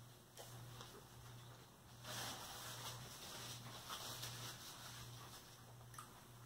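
Faint, close-up chewing of a mouthful of chili cheeseburger: a few soft wet mouth clicks, then about three seconds of louder chewing noise starting some two seconds in.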